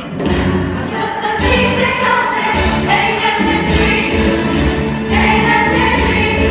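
A chorus of young voices singing a stage-musical number over accompaniment with a pulsing bass beat. The music comes in suddenly just after the start.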